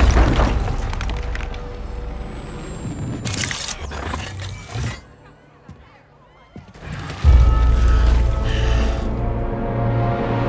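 Film fight-scene sound effects: a loud crash as a body smashes through a wall, fading into falling debris, with two more sharp hits a few seconds later. After a brief near-quiet lull, a film score comes in suddenly about seven seconds in, with a deep low rumble under held notes.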